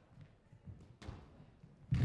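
Squash ball being struck by rackets and hitting the court walls in the last shots of a rally: a sharp hit about a second in and a louder dull thud near the end.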